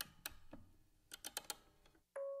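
Faint, irregular light clicks, several close together about a second in.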